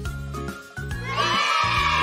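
Backing music of a children's phonics song: a repeating bass line, with a bright, sustained sound joining about a second in.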